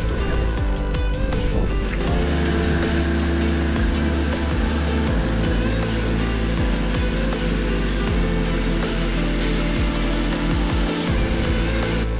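Background music with sustained low chords and a steady beat.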